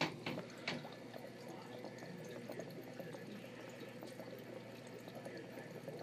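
Faint trickling and bubbling of aquarium water, with a couple of light clicks in the first second.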